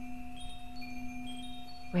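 Ambient sound-healing music: a steady low drone held under high chime tones that ring in one after another and fade.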